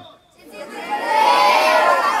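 A roomful of boys calling out an answer together, many voices at once, starting about half a second in and rising to a loud, sustained group shout.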